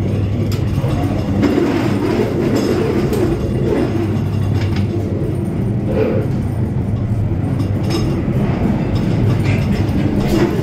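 Ghost train ride car rolling along its rail track in the dark ride: a steady low rumble of wheels on the rails with scattered clicks and knocks.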